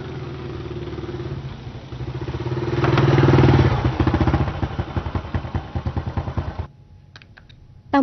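Small motorbike engine running, getting louder up to about three seconds in, then running with a rapid, even pulse until it cuts off suddenly near the end.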